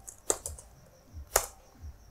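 A few keystrokes on a computer keyboard: two sharp clicks, one about a third of a second in and one near the middle, with fainter taps between.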